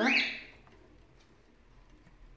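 A cockatiel's single short, rising chirp right at the start, fading within half a second, followed by faint room sound.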